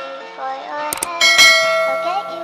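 End-screen sound effects over light background music: a sharp mouse-click about a second in, then a bright bell chime that rings on and fades slowly, the subscribe-and-notification-bell effect.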